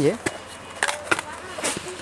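Plastic jars of metal toe rings being handled on a shop counter: a few sharp clicks and knocks of the plastic and the clink of the rings inside.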